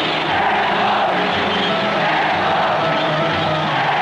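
Large stadium crowd cheering and chanting loudly and steadily, celebrating a goal.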